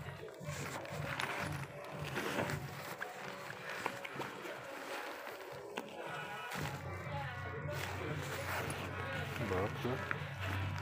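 Indistinct voices over background music, with a low steady hum setting in about two-thirds of the way through.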